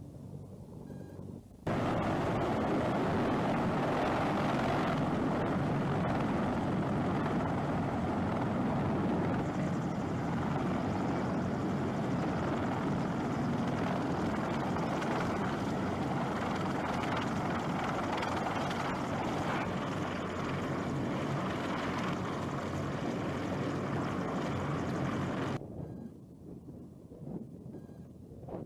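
Helicopter rotor and engine noise, loud and steady, starting suddenly about two seconds in and cutting off abruptly near the end.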